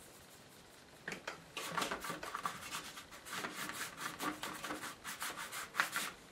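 A watercolour brush rubbing in quick, repeated scrubbing strokes as it works raw sienna paint. The strokes start about a second in and keep going until just before the end.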